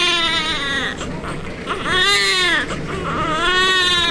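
Newborn baby crying: a cry already under way fades out about a second in, then two more wails follow, each rising and then falling in pitch.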